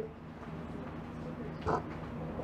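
Quiet room tone with a steady low hum, broken by one short, sharp sound near the end.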